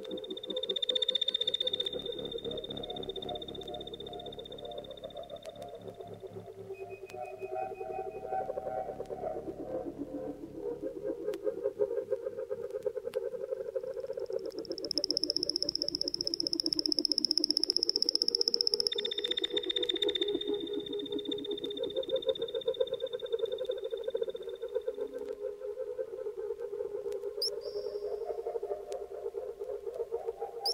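Early-1970s electronic music: a buzzy, rapidly pulsing drone in the middle range, shifting slowly in pitch. Above it come held high whistling tones: one over the first few seconds, a higher one about halfway through, and another just after it.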